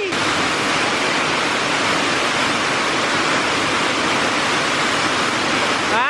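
Torrential rain pouring down on the roof of an indoor riding arena: a loud, steady, deafening rushing noise with no break.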